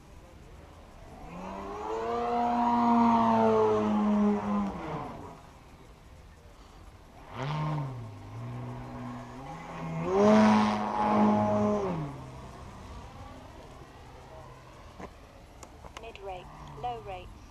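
Radio-controlled 95-inch Extra 330 3DHS aerobatic plane's engine and propeller in flight, powering up about a second in and holding high power for a few seconds before dropping off. It comes back in two more bursts, briefly around seven seconds and loudest around ten to twelve seconds, the pitch bending up and down with each burst.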